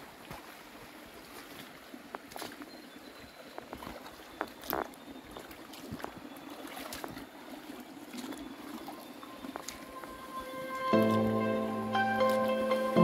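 Footsteps in gumboots on the stones of a shallow creek, irregular knocks against a steady wash of running water. Plucked-string music starts about a second before the end.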